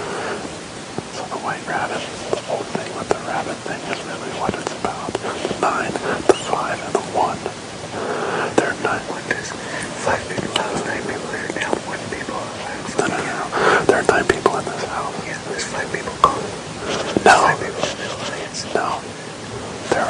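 Hushed, whispered conversation between men, speech too low for the words to be made out.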